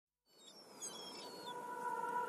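Intro sound bed fading in from silence: a few short, high bird chirps over a soft hiss, with a held musical tone entering underneath and growing louder.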